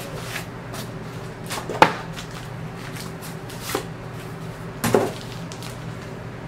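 Cardboard record mailer being handled as a vinyl LP in its plastic sleeve is slid out: a few short sharp knocks and scrapes of cardboard, the loudest about two seconds in and another pair around five seconds, over a steady low hum.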